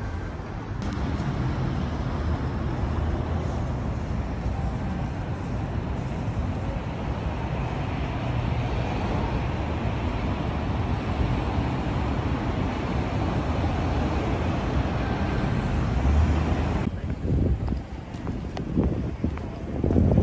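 Steady street noise of city traffic mixed with wind on the microphone, with a fluctuating low rumble. About three seconds before the end it changes abruptly to a quieter background with a few louder, irregular low sounds.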